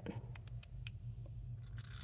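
Faint clicks of a plastic luer syringe being handled and fitted to a fountain pen's section. Near the end comes a short hiss as the syringe pushes air through the pen to clear out the last of the rinse water.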